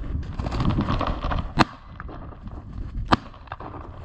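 Dry reeds rustling and crackling as a person pushes through them on foot, with two sharp snaps about a second and a half apart.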